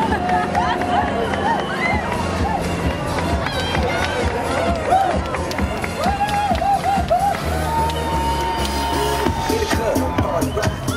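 Loud music from a passing open-top promotional bus, with a crowd's cheering, shouts and whoops over it. A long held note sounds in the last couple of seconds.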